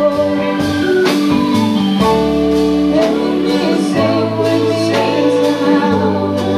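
Live rock band playing a slow ballad: held organ and keyboard chords with electric guitars, bass and drums keeping a slow beat, with singing over it.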